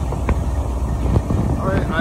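Steady wind buffeting on the microphone over the low running rumble of a Can-Am Spyder three-wheeled motorcycle cruising at road speed, with a few faint ticks.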